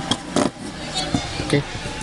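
Electric fan motor parts handled on a workbench: one sharp knock about half a second in, then a couple of light clicks as the rotor and stator are moved.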